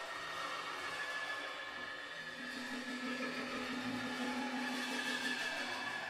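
Free-improvised baritone saxophone and percussion: a steady, grinding wash of friction sounds from a drumstick pressed and scraped against cymbals laid on the drum kit, with thin high squealing tones inside it. A held low note comes in about two seconds in and stops just before the end.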